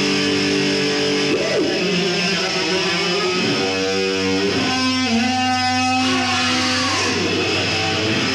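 Live heavy-metal band in an instrumental passage, led by distorted electric guitar. The guitar holds long notes and makes several sweeping slides up and down in pitch, over a steady low held note.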